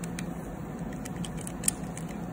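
Stainless steel pin collet attachment being handled and fitted onto a Stryker 7000 surgical drill: a few faint metal clicks, then one sharper click near the end, over a steady low room hum.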